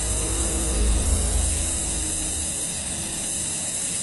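Butane escaping under pressure from a gas cylinder's valve and burning as a jet of flame, giving a steady hiss over a low rushing noise.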